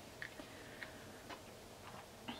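A handful of faint, irregular small ticks and light rustles from hands tying baker's twine into a bow on a paper card.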